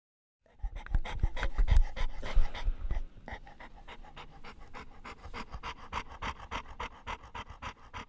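English bulldog panting rapidly, several quick breaths a second. It is louder for the first two or three seconds, with low rumbling under it, then settles into softer, steady panting.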